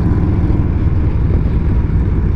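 Motorcycle engine running steadily at road speed, heard from the rider's seat with wind rushing over the microphone.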